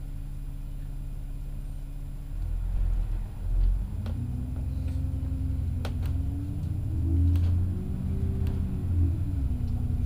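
Alexander Dennis Enviro400 double-decker bus engine idling, then pulling away from a stop about two seconds in: the engine note rises, falls back and rises again as the bus gathers speed. A few sharp clicks or rattles come through, heard from inside the bus.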